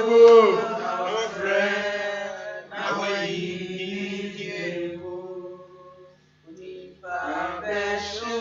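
A man's voice chanting in long, held phrases, breaking off briefly about six seconds in.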